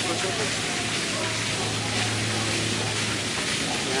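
Faint, low talking over a steady rushing hiss and a low hum.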